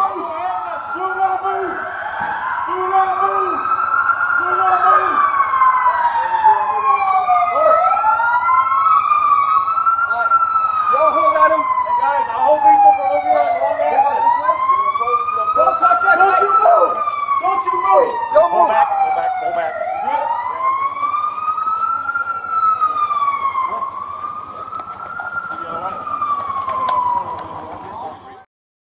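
Police car sirens wailing, each sweeping slowly up and down in pitch every three to four seconds, with at least two sirens overlapping out of step.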